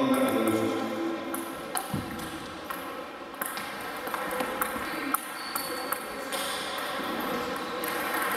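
Celluloid-style table tennis ball clicking off bats and the table in a rally, a string of sharp pings at irregular spacing, with fainter ball clicks from neighbouring tables in the hall.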